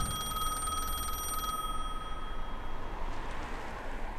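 A bell's ring fading out over about two seconds, the tail of a loud hit just before, over a faint low rumble.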